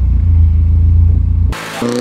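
Car engine started with the ignition key and running with a deep, pulsing rumble; about one and a half seconds in the rumble gives way to a higher engine note that shifts in pitch.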